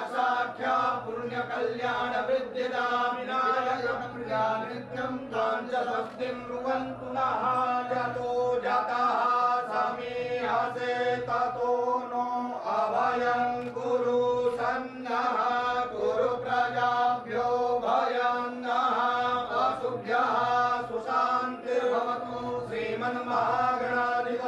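Hindu priests chanting Sanskrit mantras in a continuous recitation.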